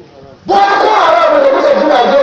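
A man's loud, drawn-out shouted call into a microphone, starting about half a second in after a brief lull and held with a slowly wavering pitch.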